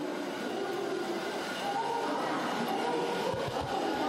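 Tracked rescue robot's drive motors and crawler tracks running steadily as it moves over boards.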